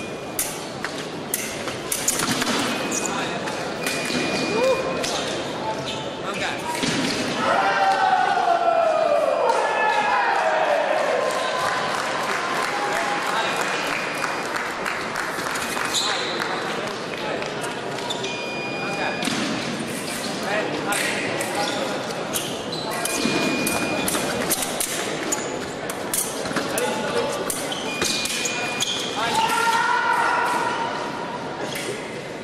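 Fencing-hall ambience: sharp knocks and footfalls on the pistes, short electronic beeps from the electric scoring machines recurring every few seconds, and voices, with a falling shout about a third of the way in. The whole carries the echo of a large hall.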